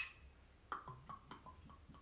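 A sharp click at the start, then faint, irregular glugs as vermouth pours from a glass bottle into a metal jigger.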